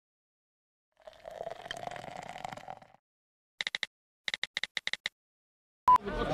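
Intro sound effects over a blank title card: a stretch of hiss with a steady hum, then rapid short blips in two bursts, four and then about seven, and a brief beep just before the picture cuts in.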